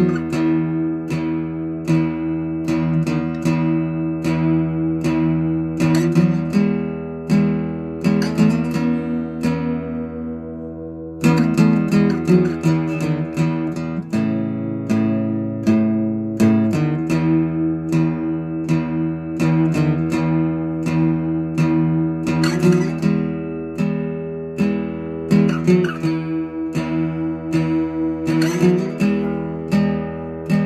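Background music: an acoustic guitar picked in a steady rhythm. It thins out briefly about ten seconds in, then comes back fuller.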